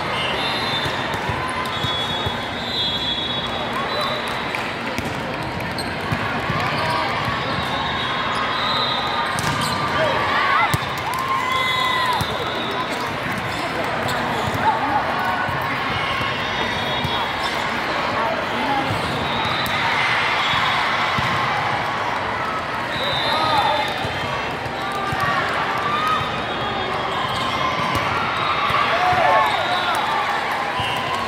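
Volleyball play in a busy sports hall: crowd chatter and calls run throughout, with sharp ball contacts now and then and short high squeaks from shoes on the court.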